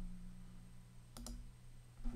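A computer mouse clicking once, a quick double tick about a second in, over a faint steady electrical hum.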